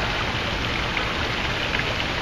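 Steady rush of falling water from a plaza fountain, an even hiss with no change in level.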